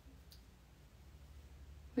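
Near silence: faint low room hum, with a single faint click about a third of a second in.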